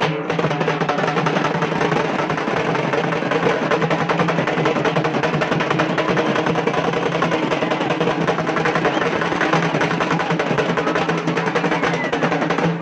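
Drum-led music: drums beating fast and continuously over a steady droning tone.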